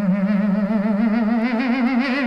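Heavily distorted electric guitar, heavy psych rock, holding one long sustained note with a fast, wide vibrato that slowly bends upward in pitch.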